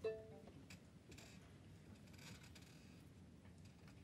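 Near silence: room tone with a few faint small clicks, and a brief faint pitched sound right at the start.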